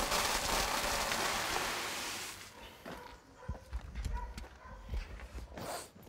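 Granular fertilizer trickling from the front tank's cell-wheel metering unit into a catch tray during a calibration (turn-off) test, a steady hiss. After about two and a half seconds it stops, and scattered knocks and thumps follow.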